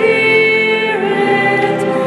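Two women singing a worship song together through microphones, holding long notes with a change of pitch about a second in.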